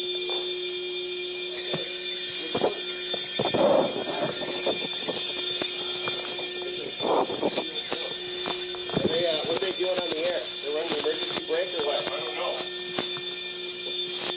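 Building fire alarm sounding a steady, unbroken high-pitched electronic tone.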